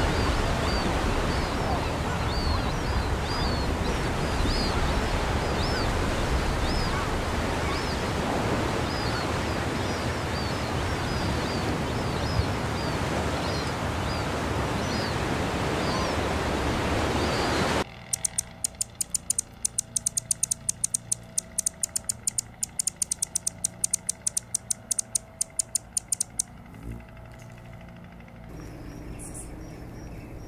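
Steady wash of water noise with faint, rapidly repeated high bird chirps over it. About two-thirds through it cuts suddenly to a quieter background with fast sharp clicking, several clicks a second, for several seconds, then a few high chirps.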